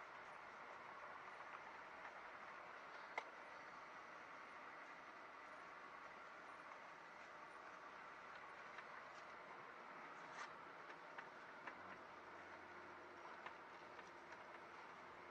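Near silence: the faint, steady hiss of a vehicle rolling slowly, heard from inside the cab, with a few faint clicks.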